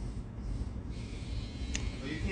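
A pause between words: a steady low background rumble, with one brief faint click near the end.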